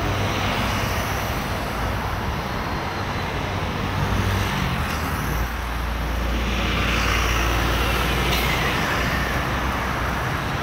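Road traffic with buses passing close by. A deep engine rumble swells through the second half as a bus goes past, with a faint falling whine.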